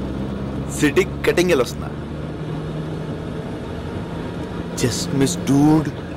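Steady drone of a car's engine and road noise heard from inside the moving car's cabin, with two short bursts of a man's speech about a second in and near the end.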